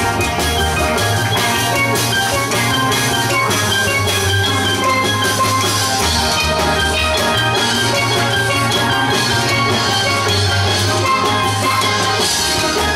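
Steel band playing: many steel pans ringing out a melody and chords over low bass-pan notes that change every second or two, with drums keeping a steady beat.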